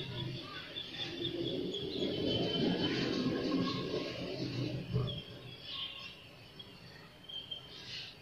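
Street ambience: a low rumble of city traffic with small birds chirping over it. The rumble is loudest for the first five seconds and then fades, leaving the chirps clearer near the end.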